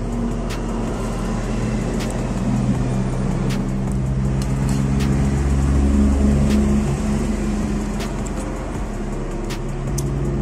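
A motor vehicle's engine running close by: a steady low hum that grows to its loudest about five or six seconds in, then eases off. Light metallic clicks of a spoon against an aluminium pan come every second or so.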